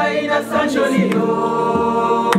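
A group of women singing a worship song together in chorus, with a few sharp percussive hits through it.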